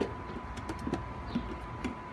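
A few faint clicks and soft taps from handling a spoon and a plastic yogurt tub, spread across the two seconds, over a thin steady high tone.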